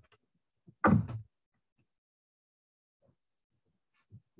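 A single dull thud about a second in, as a slab of soft clay is set down on the work table, followed by faint handling sounds.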